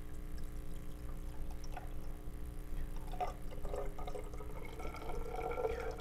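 Blue-coloured water pouring in a thin stream from a glass beaker into a tall glass graduated cylinder, a faint steady trickle, with a faint note rising toward the end as the cylinder fills.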